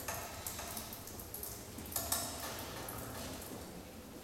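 A few sharp clicks and clinks with a brief ringing after them, the loudest pair about two seconds in, over a steady low hum.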